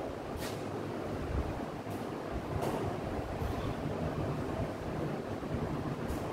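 Steady low rumbling background noise in a room, with a few faint short ticks scattered through it.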